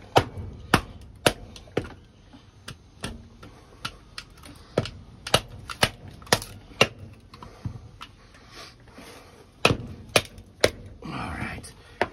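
A mallet repeatedly striking the spine of a Mora knife, driving the blade down through a split of firewood. It makes a run of sharp knocks in bursts of several quick strikes with short pauses between them. The hardest strikes come at the start, around the middle and just before the end.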